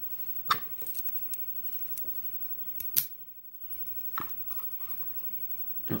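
Scattered small metal clicks and clinks as a brass lock cylinder and its key are handled, the sharpest click about three seconds in.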